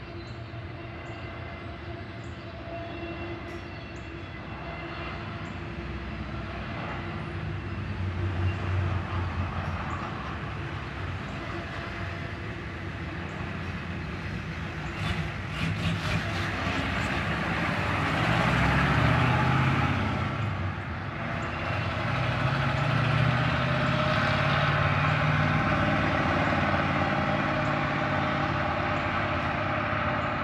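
Double-stack intermodal freight cars rolling past on the rails: a continuous rumble and rattle of wheels and well cars with some steady whining tones, growing louder toward the second half.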